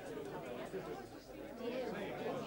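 Indistinct chatter of several voices talking at once, with no clear words.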